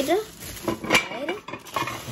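Metal baking plates of a cake-pop maker knocking and clinking together as they are handled and set down, with several sharp clicks, the loudest about a second in, and plastic wrapping rustling.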